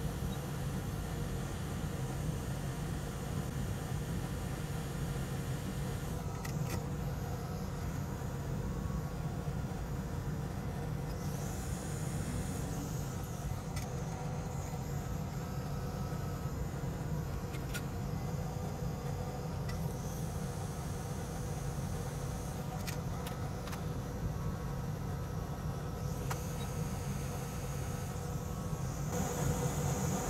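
Steady low hum of running bench equipment, with a few faint ticks.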